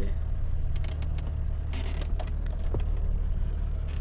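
Chevrolet S10 pickup's eight-valve flex-fuel four-cylinder engine idling steadily from cold just after starting, heard from inside the cab, with a few light clicks over it.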